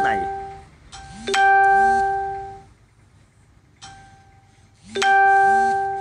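A two-note electronic chime, a soft higher note followed by a louder, lower bell-like note that rings out for about a second. It is still ringing out from the previous chime at the start, then chimes again about a second in and near the end.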